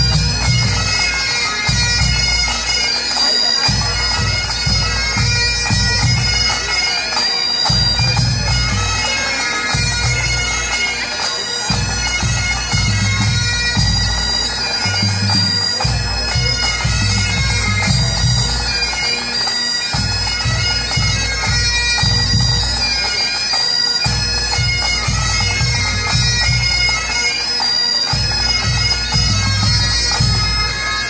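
Highland pipe band playing: several bagpipes sounding a tune over their steady drones, with drums beneath.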